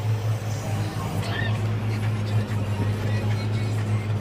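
Valtra N111 tractor's diesel engine running steadily under load while mowing, a continuous low drone.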